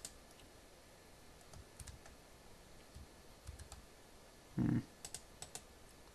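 Scattered faint clicks from a Lenovo ThinkPad laptop's keyboard and touchpad buttons as a command is copied and pasted into a terminal. One brief, louder low sound comes about four and a half seconds in.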